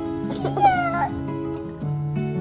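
Background music with sustained notes, and about half a second in a child's high, drawn-out meow-like cry that glides up and then sinks, ending about a second in.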